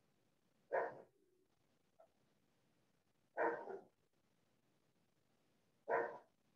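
A dog barking: three short barks, roughly two and a half seconds apart.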